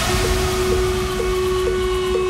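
Electronic dance music breakdown: one long held synth note, whistle-like, over a low rumbling noise, with a light tick about twice a second keeping the beat.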